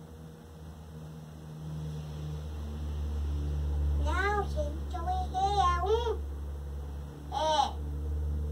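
A few short, high-pitched rising-and-falling vocal sounds: one about halfway through, a wavering run of them a second later, and one more near the end, over a steady low rumble.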